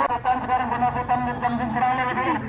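Only speech: one voice talking steadily, with no other clear sound.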